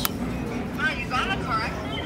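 A few words of speech, not picked up by the transcript, over the steady hum of a large store, with a sharp click right at the start.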